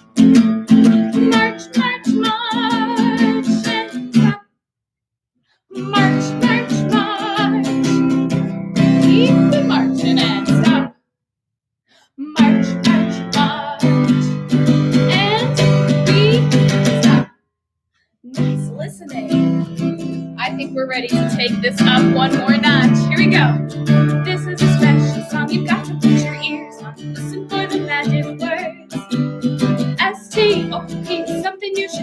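Acoustic guitar strummed in a steady rhythm that stops dead three times for a second or so, the freeze cues of a stop-and-go movement song.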